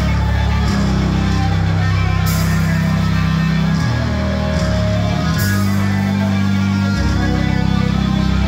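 Death metal band playing live: heavy guitar and bass chords held over drums, with cymbal crashes twice, about three seconds apart.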